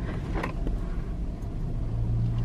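Steady low rumble of a car's engine and road noise heard from inside the cabin.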